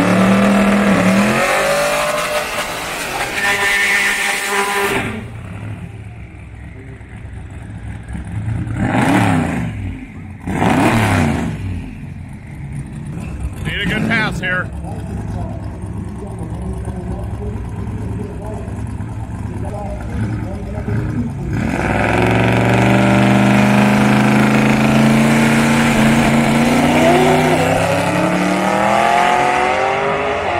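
Twin-turbo Buick Skylark drag car engine. It runs loudly at first, gives three sharp rev blips, then launches about 22 seconds in and pulls at full throttle, pitch climbing and stepping up through the gears. It is a clean pull on a revised fuel tune.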